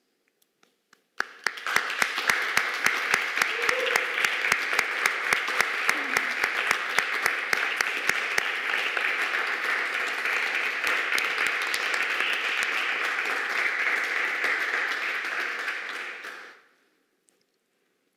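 Small audience applauding: a few scattered claps about a second in, then steady clapping with some sharp individual claps standing out in the first half, dying away after about fifteen seconds.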